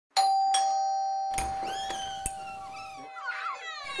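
A two-note doorbell chime, each note ringing on and slowly fading, followed from about a second and a half in by a series of short pitched yelps.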